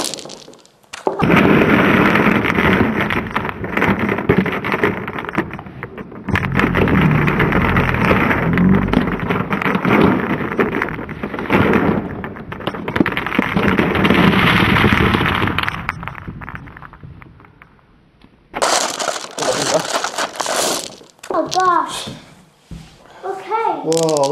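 A large batch of glass marbles pouring out of a plastic tub, clattering against each other and the tub. The marbles land on a felt-covered table in a long, loud rattling surge that starts about a second in, fades out after about fifteen seconds, and ends with a shorter second burst.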